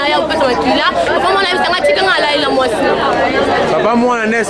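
Only speech: people talking over one another, with no other sound standing out.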